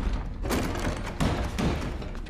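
A few dull thumps and taps, about three in two seconds, over background music.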